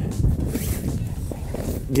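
A heavy dark fabric cover being handled and pulled into place on deck, its material rustling.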